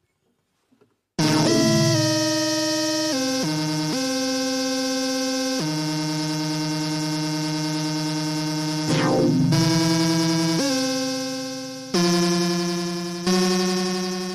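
Slow synthesizer music of long held notes that change pitch every one to three seconds. It starts about a second in, with a short sliding sweep about nine seconds in. It is meant as a sketch of how the North Pole might sound.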